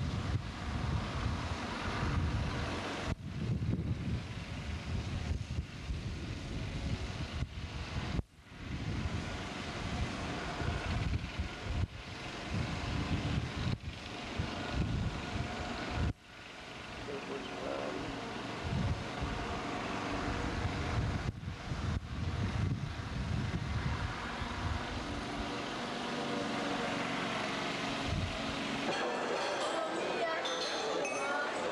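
Wind buffeting a camcorder microphone outdoors: an uneven low rumble in gusts over a steady hiss. The sound drops out briefly twice at edits in the recording.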